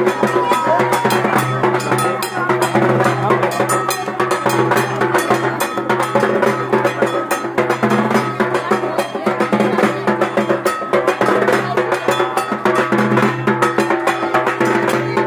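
Dhak, a large Bengali barrel drum, beaten with sticks in a fast, continuous rhythm over a steady low drone.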